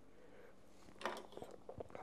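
Handling noise: a few short, soft clicks and rustles of hands working braided fishing line and leader over a tabletop, starting about a second in.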